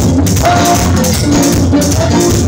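A banda brass band playing live: sustained brass lines with trombones over a drum kit and cymbals keeping a steady dance beat.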